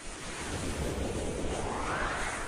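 Rising whoosh sound effect: a rushing noise that sweeps steadily upward in pitch over a low rumble.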